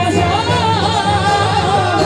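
Qawwali music: a lead voice sings a long, wavering ornamented line over steady harmonium chords.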